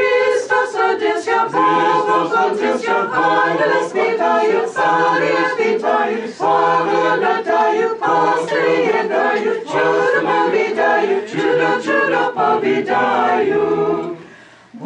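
Small choir singing an Orthodox Christmas carol a cappella, in sustained phrases with short breaks between them.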